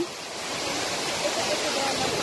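Steady rushing roar of a large waterfall close by, with faint voices about halfway through.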